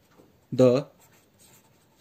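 Faint scratching of a felt-tip marker writing on paper.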